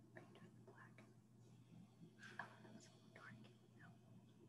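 Near silence: faint, indistinct whispering voices over a low steady hum, with a slightly louder murmur about halfway through.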